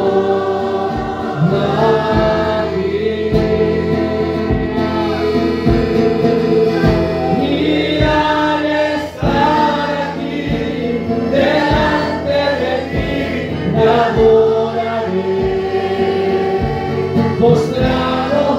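Congregation singing a worship song together with live amplified instruments, over a steady beat.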